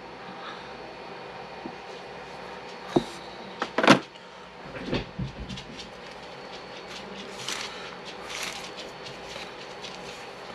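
Two sharp knocks about a second apart, the second louder, of hard plastic against plastic as a miniature goes back into the box's plastic insert tray, followed by light crinkly rustling of packaging being handled.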